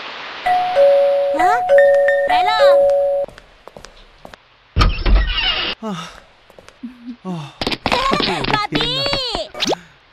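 Two-tone ding-dong doorbell chime rung three times in quick succession. About two seconds later comes a short thud with a rush of noise.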